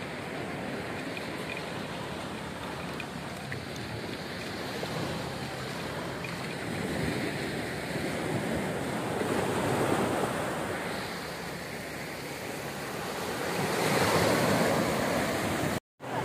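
Sea surf breaking and washing up the beach as a steady rush, swelling louder about halfway through and again near the end.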